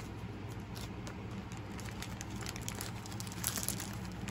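A clear plastic bag holding bone runes crinkling as it is handled, with scattered crackles that bunch up near the end. A steady low hum runs underneath.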